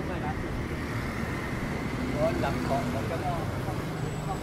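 City street ambience: the steady rumble of passing road traffic, with indistinct voices of people nearby.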